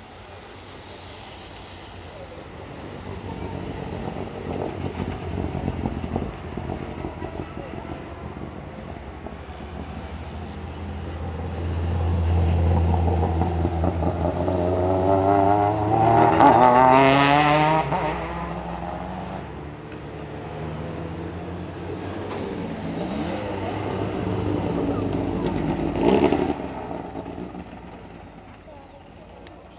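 Race cars' engines at a hillclimb hairpin, revving as they brake for the bend and accelerate out of it. The loudest pass comes a little past the middle with a rising, wavering engine note, and there is another loud burst shortly before the end.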